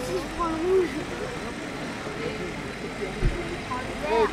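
A voice speaking briefly at the start over a steady outdoor background noise, with a single short low thump about three seconds in.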